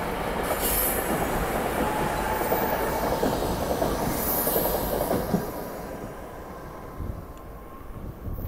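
SEPTA electric regional rail train rolling past, its wheels and running gear rumbling on the rails, with two brief high-pitched bursts. The noise fades after about five seconds as the last car goes by.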